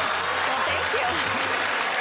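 Studio audience applauding, with voices mixed in.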